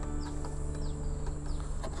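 Short, high bird chirps, each falling in pitch, repeating about twice a second over a steady low hum and a faint high whine.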